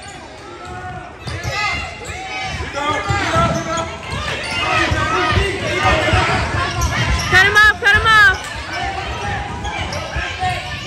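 A basketball bounces on a hardwood gym court while players and spectators shout throughout. Two loud, high shouts come about seven and a half seconds in.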